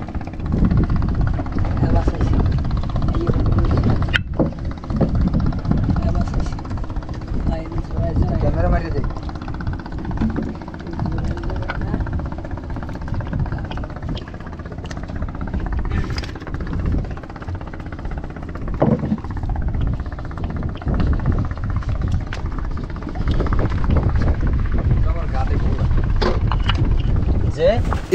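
A boat's engine running with a steady low rumble, with men's voices faintly talking now and then.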